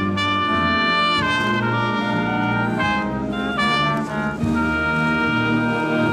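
High school concert band playing, led by the brass: held chords that change every second or so, with a brief dip in loudness about four seconds in.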